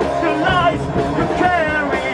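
Live rock band playing: electric guitars, bass and drums, with a singer's voice gliding in pitch over the band.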